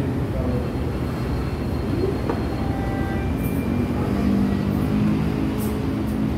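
Steady low rumble of restaurant room noise, with a few faint thin tones over it.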